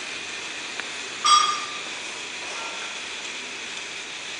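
The small robot's geared DC drive motors run with a steady, faint whine and hiss as it drives straight. A short beep comes about a second in.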